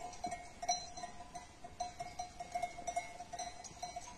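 Faint, irregular ringing of bells on a grazing flock of sheep, many small pings at one pitch.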